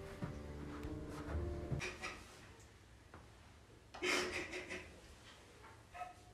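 Low, sustained string music that cuts off suddenly about two seconds in, followed by a woman's crying breaths, with one loud sharp gasp around four seconds in.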